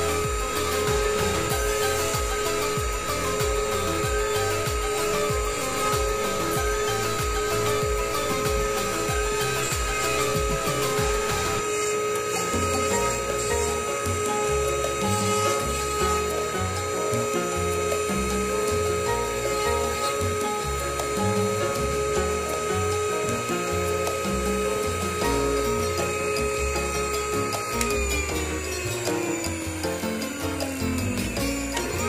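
Dental lab bench lathe spinning a small mounted abrasive point with a steady whine while acrylic denture material is trimmed against it. The motor winds down near the end, its pitch falling. Background music plays throughout.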